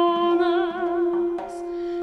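Armenian folk song for female voice and a trio of duduks. One duduk holds a steady drone while a wavering melody line with vibrato sounds above it, then thins out near the end.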